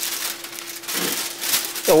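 Crinkling of a clear plastic bag and aluminium foil being handled, in irregular crackles, over a faint steady hum.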